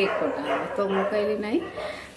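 A woman's voice in drawn-out, sing-song tones, with long held and gliding notes rather than ordinary quick speech, fading near the end.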